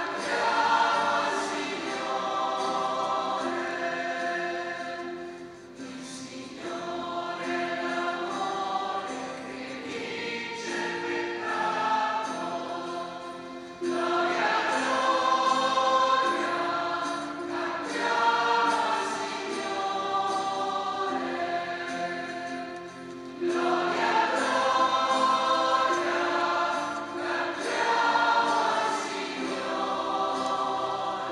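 A church choir singing a hymn in sustained phrases, with fresh, louder entries about 14 seconds and 23 seconds in.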